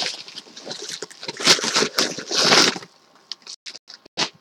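Packing material rustling and crinkling as a shipped package is unwrapped, with plastic bubble wrap being handled. A few light clicks and taps follow near the end.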